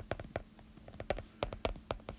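Stylus nib tapping and clicking on a tablet's glass screen during handwriting, an irregular run of small sharp clicks, several a second.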